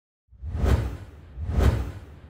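Logo-intro sound effect: two whooshes with a deep rumble underneath, about a second apart, the second fading away slowly.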